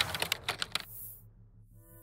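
Intro sound effects: a quick run of keyboard-typing clicks, about ten in the first second, then a soft whoosh and a held synthesizer chord with a low pulse underneath.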